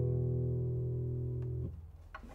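A 1967 José Ramírez III 1A classical guitar's closing chord ringing out and slowly fading, then cut off abruptly near the end.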